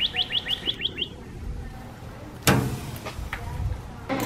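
A bird calling in a quick run of short, falling chirps, about seven a second, that stops about a second in. A brief noisy burst follows about two and a half seconds in.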